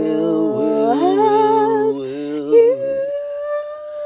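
Two voices, one low and one higher, singing and humming an unaccompanied improvised song in long held notes that waver slightly in pitch. About three seconds in the lower voice stops and the higher one holds a single note alone.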